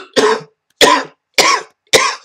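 A man's fit of coughing into a cloth held at his mouth: four short, loud coughs about half a second apart. It is the cough of a lung cancer patient with mucus constantly forming in his lungs.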